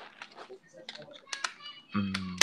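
Typing on a computer keyboard: a scatter of irregular key clicks.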